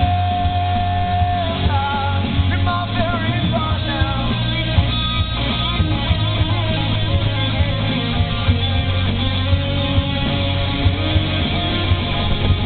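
Rock band playing live through a PA, with electric guitars, bass and drums. A high lead note is held for about a second and a half at the start, then gives way to a run of bending notes over a steady low bass.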